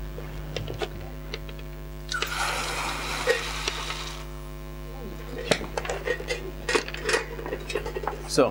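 Leftover fuel pellets and biochar poured from the stove's stainless-steel tube into a plastic bowl, a continuous pour lasting about two seconds starting about two seconds in. Short clinks and knocks of the metal stove parts being handled come before and after it, over a steady mains hum.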